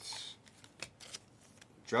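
Trading cards sliding against one another as they are flipped through a stack by hand: a brief swish just at the start, then a few faint flicks.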